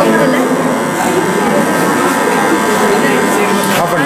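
Small DC hobby motor, powered by a 9-volt battery, running with a steady buzzing whine, with voices chattering behind it.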